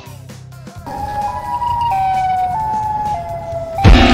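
Siren Head's siren call as a sound effect: a steady, siren-like tone that steps down in pitch a few times, over a low hum. Near the end a much louder, harsh blast bursts in.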